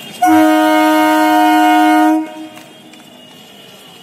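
Electric local train's horn sounding one steady, loud blast of about two seconds as the train pulls into the platform, then cutting off, over faint platform bustle.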